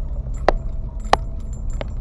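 Car driving slowly over a rough dirt road, heard inside the cabin: a steady low rumble with three sharp rattling clicks as the car jolts over bumps.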